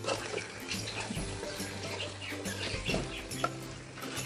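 A wooden spatula stirring raw chicken pieces through wet masala in an aluminium pot, with wet sounds and scattered scrapes, over background music.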